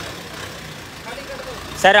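A steady, low mechanical hum runs under faint distant voices.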